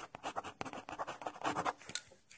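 Marker pen writing on paper: quick, irregular scratchy strokes, one after another.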